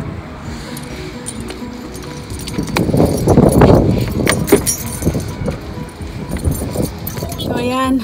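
A car key jangling with clicks and rustling handling noise as someone opens a car door and climbs in, with a louder stretch of rough, rumbling noise about three seconds in.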